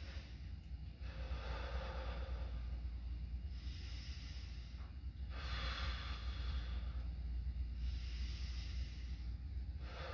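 A young man taking slow, deep breaths in and out, two full breaths of about two seconds per stroke. This is deliberate deep breathing for a stethoscope lung exam.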